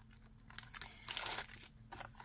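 Clear plastic packaging crinkling as it is handled, one rustle about a second long starting about half a second in.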